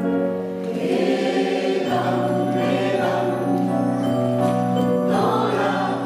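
A mixed amateur choir singing a French pop song in held, sustained chords. A steady low note comes in about two seconds in beneath the voices.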